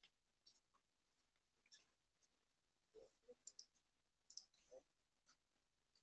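Near silence broken by a handful of faint clicks from a computer mouse, a few about three seconds in and a couple more about a second later.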